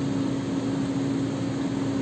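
Steady room hum: a constant low tone over an even hiss, with no other events.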